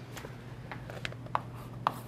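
Chalk on a blackboard: a few faint clicks and scrapes, the clearest about a second and a half in and again near the end.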